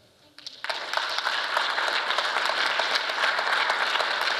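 Audience applauding at the end of a talk. The clapping starts about half a second in and holds steady.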